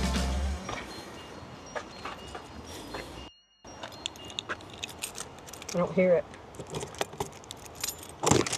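Keys jangling and clicking at a camper van's side door as it is being unlocked, with scattered light metallic clinks.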